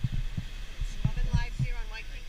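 Wind buffeting an action camera's microphone: irregular low thumps and rumble, with faint distant voices in the second half.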